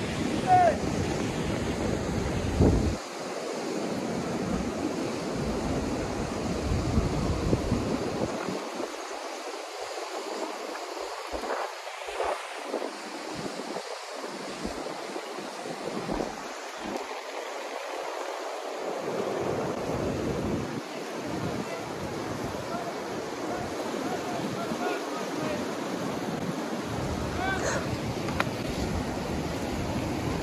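White water rushing steadily down an artificial slalom course, with wind buffeting the microphone in the first few seconds and again in the second half.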